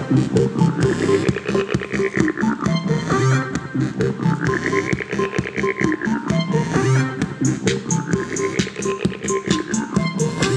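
Electronic music played live on a small handheld synthesizer: a fast pulsing beat under sweeping tones that rise and fall in pitch, three sweeps in all.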